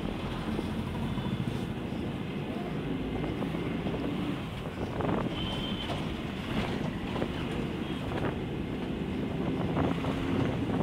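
Steady drone of a moving vehicle's engine and road noise, heard from on board, with wind buffeting the microphone.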